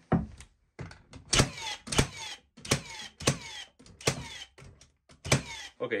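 Milwaukee Fuel cordless framing nailer firing 3-inch paper-tape framing nails into stacked 2x4 lumber, about seven sharp shots at uneven intervals, each followed by a short falling whine of the tool.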